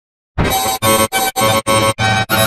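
Black MIDI played through a BASSMIDI soundfont synthesizer: a loud, clashing wall of thousands of simultaneous notes. It starts about a third of a second in and comes in chunky blocks about three a second, each cut by a short gap.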